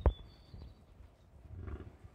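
American bison grunting: a short, sharp grunt right at the start, the loudest sound here, and a longer, lower, pulsing grunt near the end.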